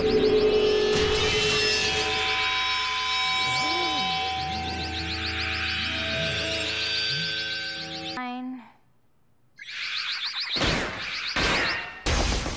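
Animated-show soundtrack music: sustained chords with swooping, warbling sound effects over them. It breaks off abruptly about eight seconds in, and after a second of near silence loud, noisy crashes and whooshes come in.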